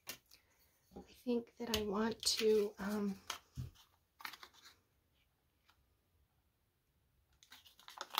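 Paper scraps being handled and shuffled on a craft desk, with soft rustles and light clicks. A woman's voice murmurs briefly in the first half.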